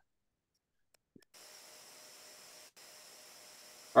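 Faint steady hiss with a thin hum from an open microphone's background noise, starting after about a second of dead silence and briefly dropping out once.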